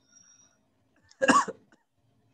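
A person coughs once, a short sharp cough a little over a second in.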